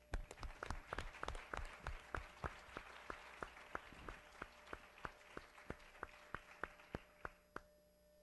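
Audience applauding. It starts suddenly, holds steady, then thins to a few scattered claps and stops shortly before the end.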